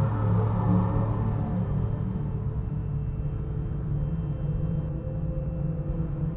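Steady low drone of soundtrack music, a little louder over the first second or two and then holding even.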